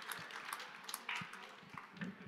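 Faint, scattered applause from an audience, with a few low thumps mixed in.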